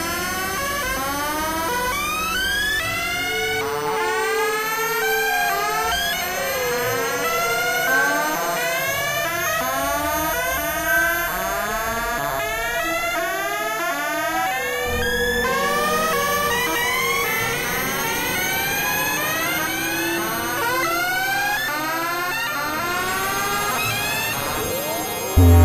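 Experimental electronic music made of many overlapping, repeating rising synthesizer glides that sound siren-like, over a few long held tones, at an even level.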